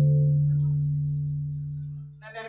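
Acoustic guitar's last strummed chord ringing out, its notes slowly fading away with the low note lasting longest.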